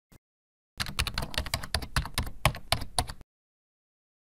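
Computer keyboard typing: a rapid run of keystrokes lasting about two and a half seconds, then stopping abruptly.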